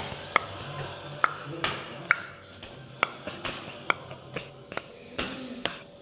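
A series of sharp, irregularly spaced taps, each with a brief metallic-sounding ring, about a dozen over several seconds.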